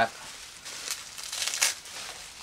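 Plastic bubble wrap crinkling and rustling as it is pulled apart by hand, with a few sharper crinkles.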